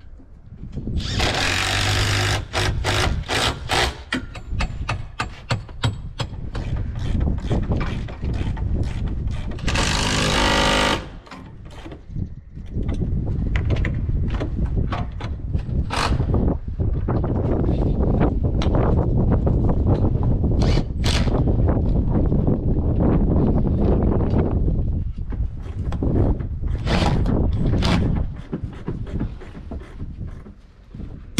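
Cordless drill running in short bursts, driving fasteners into the top rail of a folding door, among many sharp clicks and knocks of metal parts being handled.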